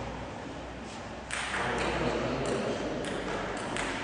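Table tennis ball being struck back and forth in a rally, about five sharp clicks of ball on bat and table, roughly one every half to three-quarters of a second, with a little echo from a large hall.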